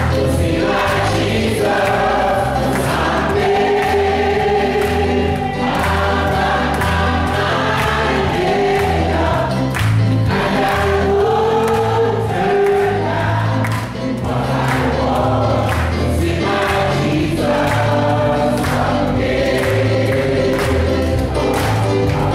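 Congregation singing a gospel song together, with a low bass line and a steady beat of sharp strikes beneath the voices.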